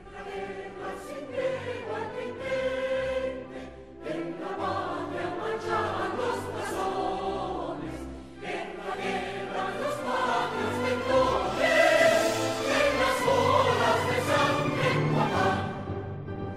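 Choral music: a choir singing in long sustained phrases, with brief breaks about four and eight seconds in, growing loudest about three quarters of the way through.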